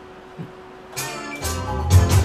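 Record on a DJ turntable played through the room's speakers: the music starts abruptly about a second in, after a faint steady hum, and a bass beat comes in half a second later.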